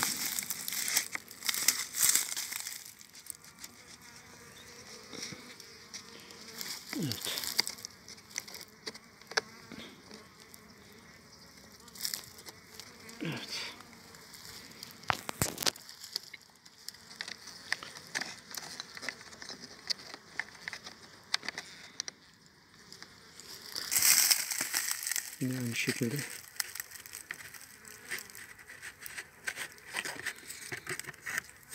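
Honeybees buzzing around a hive entrance, a couple passing close with a falling buzz, mixed with rustling and crinkling as the entrance is stuffed and plugged by hand; the handling noise is loudest near the start and again near the end.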